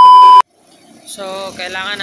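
A loud, steady, high-pitched test-tone beep of the kind laid over colour bars, cutting off suddenly about half a second in. After a short gap, a person starts talking.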